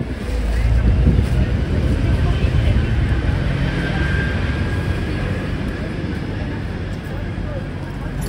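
Low engine rumble of a passing vehicle, swelling suddenly about half a second in and then slowly fading away.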